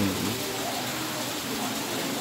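A steady rushing hiss, like running water, with faint voices underneath.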